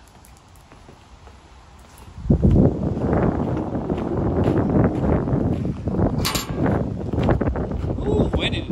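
Quiet at first, then from about two seconds in a loud, rough, irregular rumble of wind buffeting the microphone, with a brief higher squeak about six seconds in.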